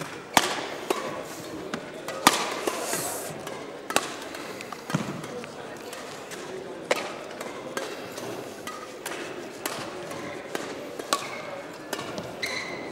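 Badminton rackets hitting shuttlecocks during warm-up: sharp cracks at irregular intervals, one to three seconds apart, each with a short echo from the sports hall, over a background of voices.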